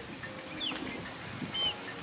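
A few short, faint bird chirps over a steady background hiss of outdoor ambience.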